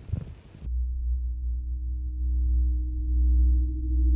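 Low, steady electronic drone of dark ambient background music, a few held low tones that come in about half a second in.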